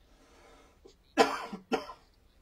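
A person coughing twice, about half a second apart, in the second half, after a soft breath.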